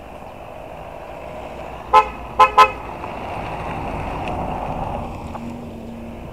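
A vehicle horn toots three times: one short toot, then a quick double toot about half a second later, over steady background noise that swells a little and fades after the toots.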